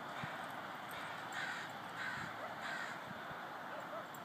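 A bird calling three times, harsh calls a little over half a second apart, over steady outdoor background noise.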